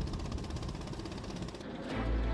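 A small wooden fishing boat's engine running steadily with a rapid, even chugging. The sound changes near the end to a lower, duller rumble.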